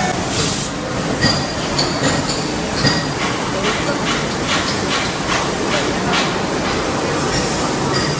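Automatic corrugated-paperboard die-cutting machine running: a steady mechanical din with repeated clacks, coming about three a second through the middle, and a short hiss about half a second in.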